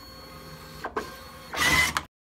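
DNP DS-RX1 dye-sublimation photo printer running its start-up paper feed with a steady motor hum. There is a click about a second in and a loud cutter stroke near the end as it trims the paper to line up paper and ribbon after loading.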